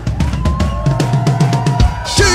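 Live band music: a fast passage of drum strikes, several a second, with one high note held steadily over it.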